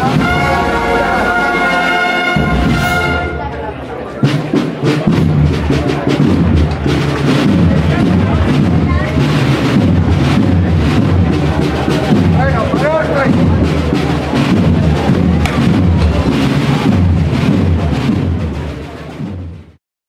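A brass band holds the final chord of a processional march and cuts off about three seconds in. A crowd then applauds and shouts, and the sound fades out near the end.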